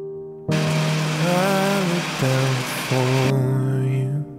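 Ninja countertop blender switched on about half a second in, running as it purées watermelon chunks, its motor pitch shifting up and down under the load, and stopping shortly before the end. Soft background music underneath.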